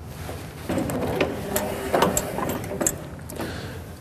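Irregular metallic clicks and rattling from the pickup mechanism of a New Holland Roll-Belt 450 round baler being worked by hand.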